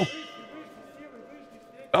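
Fight-round bell signalling the start of round three, its ringing tone fading away over about two seconds.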